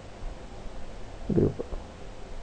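Steady low electrical hum under the even hiss of the recording's background noise, with a short spoken word about one and a half seconds in.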